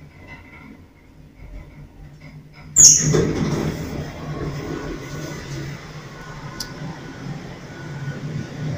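ATLAS Excell traction elevator: a sudden loud clunk with a short high squeal about three seconds in, then a steady hum and rumble inside the cab as the car runs.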